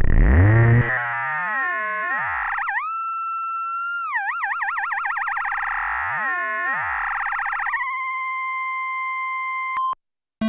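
Studiologic Sledge synthesizer, a Waldorf-engine virtual-analog synth, holding one electronic tone while its knobs are turned. The tone warbles and sweeps up and down, glides up in pitch and swoops back, then settles into a steady pure tone that cuts off sharply near the end.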